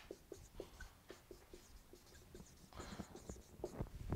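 Dry-erase marker writing a word on a whiteboard: a faint run of short strokes.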